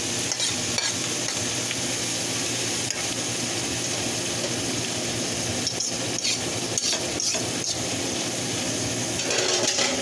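Chicken breast chunks sizzling steadily in garlic butter in a nonstick skillet. About a dozen short clicks and scrapes of a fork and plate against the pan come as the chicken is pushed in and stirred, with a louder patch near the end.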